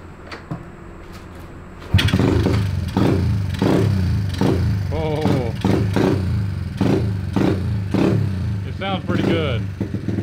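Freshly rebuilt Honda Z50R engine, a 108cc big-bore four-stroke single with a race head and cam, starting about two seconds in and then revved in repeated short throttle blips. It sounds pretty mean.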